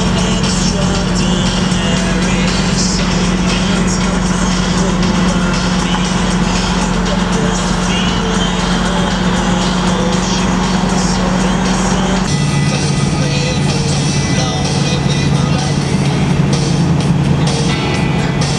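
A song plays over the steady in-cabin drone of a 1969 Camaro Z/28's 302 V8 cruising at road speed. About twelve seconds in, the engine note drops abruptly to a lower steady pitch.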